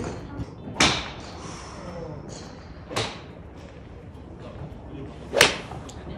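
Three sharp golf club strikes on balls: two fainter cracks about one and three seconds in, and the loudest near the end, an iron shot struck cleanly.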